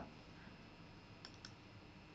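Near silence with two faint clicks about a second in, a fraction of a second apart: a computer mouse clicked to move to the next presentation slide.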